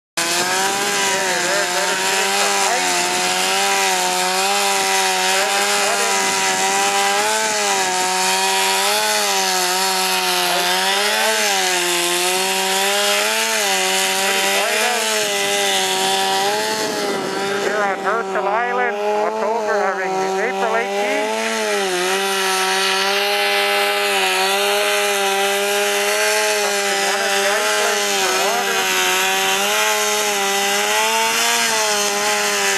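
Gasoline chainsaw running under load while cutting through thick lake ice, its engine pitch rising and falling in a slow, repeated rhythm as the bar is worked through the cut. Around two-thirds of the way through, the pitch swoops quickly up and down a few times.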